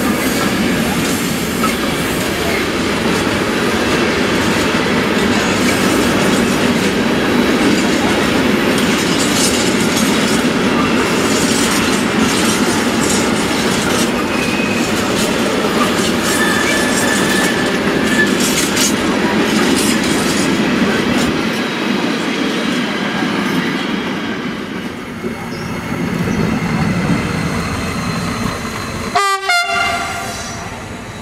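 A container freight train rolling past: a steady rumble of steel wheels on the rails with a few short wheel squeals, easing off as the last wagons go by. Near the end comes a brief pitched horn sound.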